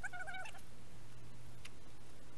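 A short animal call, wavering in pitch and lasting about half a second at the start, over a steady low hum.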